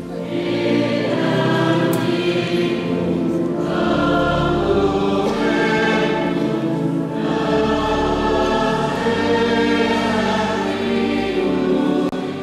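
Choir singing a slow hymn in long held phrases, with short breaks between phrases.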